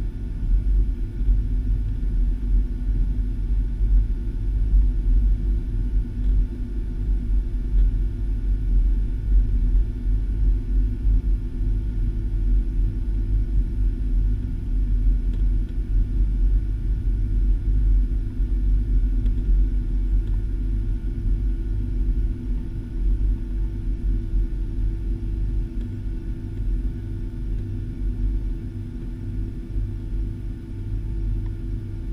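Cabin noise of a Boeing 757 taxiing: a steady low rumble with a faint hum, from the jet engines at idle and the aircraft rolling along the taxiway.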